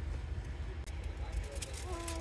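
Low steady rumble of a car idling, heard inside the cabin, with a few faint small clicks; a voice begins near the end.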